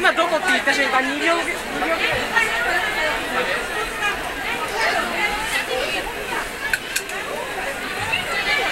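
Crowd chatter: many people talking at once, voices overlapping. Two short clicks sound about seven seconds in.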